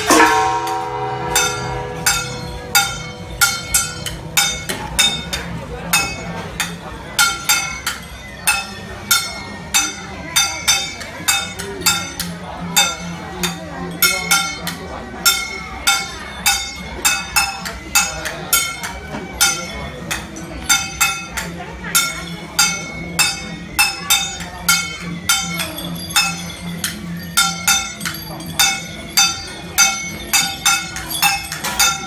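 A small metal percussion instrument is struck in a steady beat, about two ringing clinks a second, keeping time for a procession troupe's steps.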